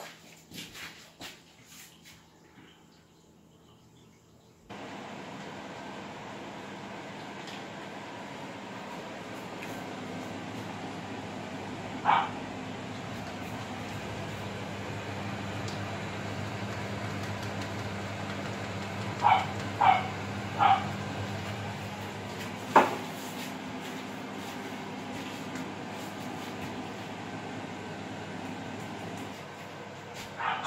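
A small dog yips once partway through, then three times in quick succession, followed by a single sharp click, over a steady hiss and low hum that starts suddenly about five seconds in.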